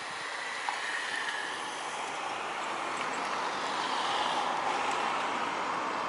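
Road traffic: a steady hiss of passing cars that swells a little about four seconds in.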